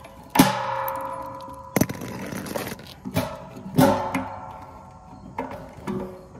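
A wrench knocking against the metal support arm of a satellite dish as its nut is loosened: about five sharp clanks, each followed by a short metallic ring.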